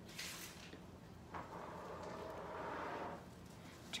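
Faint rustling of a carnation's petals and stem being handled by hand: a brief rustle at the start, then a longer soft one in the middle.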